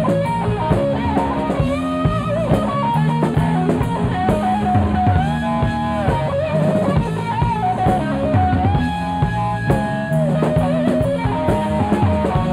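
Live rock power trio playing an instrumental passage: an electric lead guitar plays long sustained notes that bend up and down with vibrato over electric bass and a drum kit.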